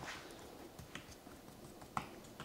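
Hands patting dry seasoning rub onto raw pork chops on a wooden cutting board: a few faint, soft taps, the clearest near the end.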